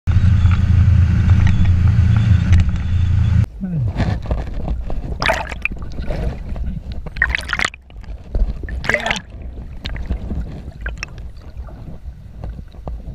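A motorboat runs with a loud, steady low rumble of engine and wind on the microphone, which cuts off suddenly about three and a half seconds in. Then comes the muffled underwater gurgling and sloshing of lake water around a waterproof-housed camera, with a few short splashy bursts as the skier works a foot into the water ski's binding.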